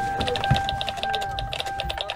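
Typing on a computer keyboard: a quick, irregular run of key clicks, about eight a second, over a faint steady tone.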